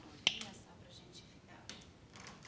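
A single sharp click about a quarter second in, then faint handling noises and a small tick near the end, as a small product is handled.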